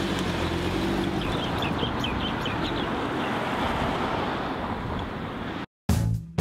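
Outdoor rushing noise of wind on the microphone with a car pulling away from the curb, and a few short high chirps about two seconds in. The sound cuts off abruptly near the end.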